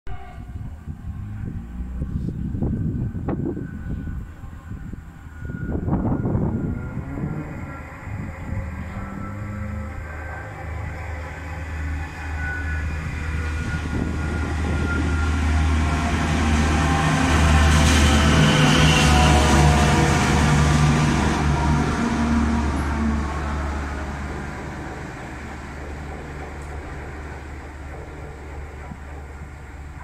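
A lone diesel locomotive running light through a station: it approaches with a steady engine throb that builds to its loudest as it passes, about two-thirds of the way in, then fades as it moves away. There are two loud bursts a few seconds apart as it approaches.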